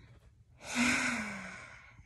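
A woman's long, breathy sigh starting about half a second in, with her voice falling in pitch as it trails off: a sigh of someone lying down to catch her breath.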